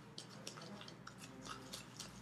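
Faint, irregular clicks and gritty scraping of a thick brown-sugar, honey and coconut-oil paste being stirred in a small plastic container.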